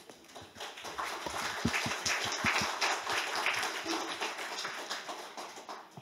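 Audience applauding, swelling about a second in and dying away near the end.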